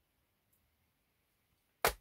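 Near silence, then one short, sharp click just before the end.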